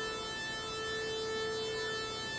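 Two analog synthesizer oscillators, both sawtooth waves tuned near 440 Hz, mixed together into one steady buzzy tone. Oscillator 2 is not quite in tune with oscillator 1, so the two beat against each other.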